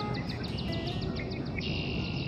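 A small songbird's trill: a fast run of short, high notes at about eight a second, turning into a buzzy high note near the end.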